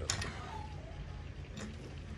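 Faint handling sounds with a few small clicks as the locking knob of a Tamron 150-600 G2 lens's tripod collar is screwed tight by hand. A click comes just after the start and another about one and a half seconds in.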